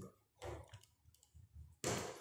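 A few faint clicks and a brief low murmur in a quiet room, then a sudden sharp sound near the end.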